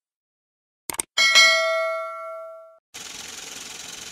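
Subscribe-button animation sound effect: a quick mouse click about a second in, then a bright notification-bell ding that rings out and fades over about a second and a half. A steady faint hiss follows near the end.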